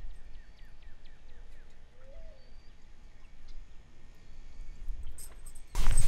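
Faint bird calls: a quick run of about eight short, falling chirps in the first second and a half, over a low rumble.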